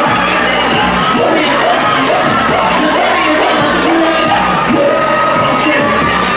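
A large audience cheering and shouting without letup over music playing.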